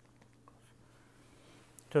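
Faint light taps and scratches of a stylus writing on a pen tablet, over a low steady hum. A man's voice starts speaking near the end.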